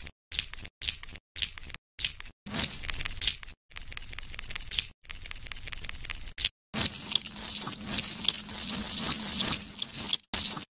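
Edited stop-motion sound effects: a string of short crackling, rustling wet-sounding clips, each cut off abruptly, with dead-silent gaps between them.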